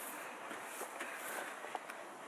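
Faint background noise with a few soft, short taps, about a second in and again near the end.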